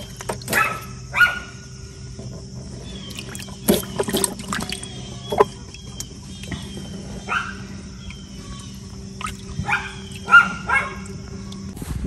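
Water sloshing and splashing in a plastic tub as a young chicken is held down in it for a bath, with a few sharp splashes around the middle. Short animal calls repeat throughout, several in quick succession near the end.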